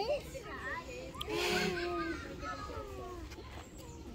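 Young children's voices chattering and calling out while they play, in short high-pitched bursts.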